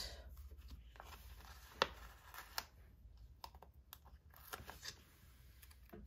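Faint, scattered small clicks and paper rustles of stickers being handled with metal tweezers and pressed onto a planner page; the sharpest tap comes about two seconds in.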